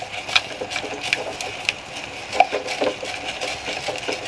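Silicone spatula stirring and scraping soft-setting scrambled eggs around a stainless steel saucepan: a run of irregular soft scrapes and light clicks against the pan.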